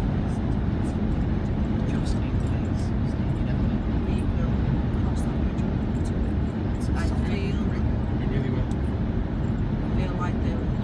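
Steady road and engine noise heard inside a car cabin at motorway speed, an even low rumble of tyres and engine.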